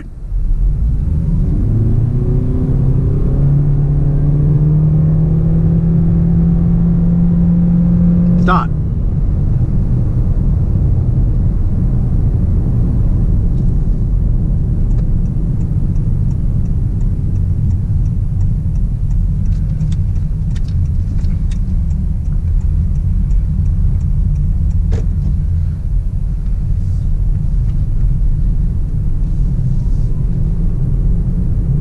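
Inside a Honda Clarity accelerating hard from a standstill in EV mode: a rising drivetrain whine and a strong hum build for about eight and a half seconds, then cut off suddenly. After that, steady tyre and road noise as the car rolls on.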